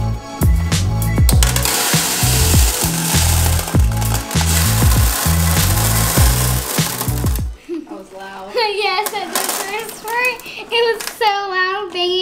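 Background music with a steady beat, over a rushing hiss of aquarium rocks poured from a bag into a glass tank. The music stops about seven and a half seconds in, and a child's high voice follows.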